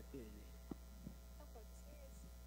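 Faint, steady electrical mains hum in the audio chain, with a couple of soft clicks in the middle and faint distant voice fragments near the end.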